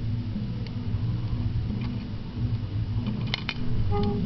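A steady low hum, with a few faint clicks and then two sharper plastic clicks near the end as the fire alarm pull station is opened.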